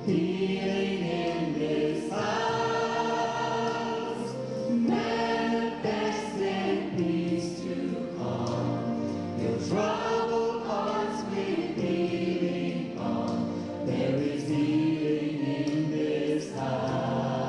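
Gospel choir singing in held chords that shift every second or two.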